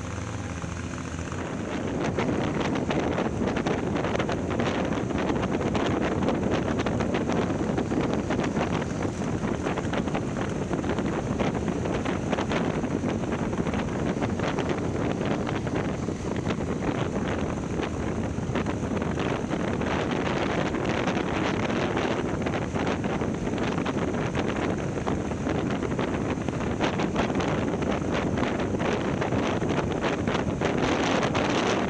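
Wind buffeting the microphone of a camera mounted on a moving motorcycle, a dense rushing roar over the bike's running noise. It gets louder about a second and a half in as the bike picks up speed.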